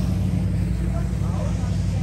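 A steady, low engine hum. Faint voices are heard about a second in.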